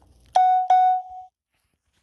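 Two quick electronic beeps at the same pitch, a third of a second apart, the second held for about half a second and fading; then the sound cuts out to dead silence.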